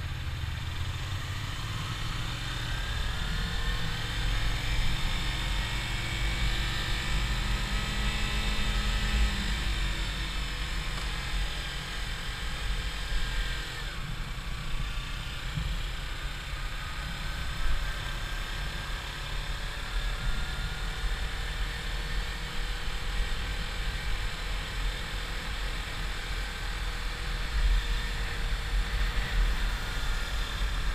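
Kawasaki Ninja 300 parallel-twin engine heard from the riding bike, its pitch rising over several seconds as it accelerates and dropping back at gear changes, several times over. Heavy wind rumble on the microphone lies under it throughout.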